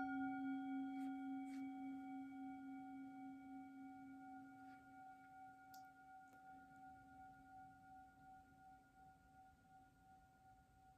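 A metal singing bowl struck once with a wooden mallet, then ringing with a low hum and several higher overtones that fade slowly with a gentle waver and are still sounding at the end. The bowl marks the close of a period of silent prayer.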